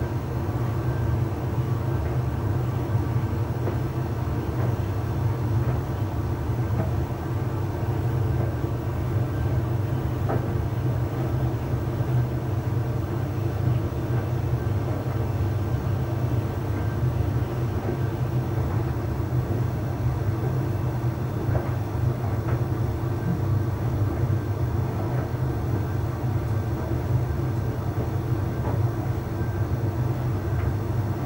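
Arçelik 3886KT heat-pump tumble dryer running a Cottons Eco cycle: a steady low hum from its inverter motor and heat pump with the drum turning, and a few faint ticks.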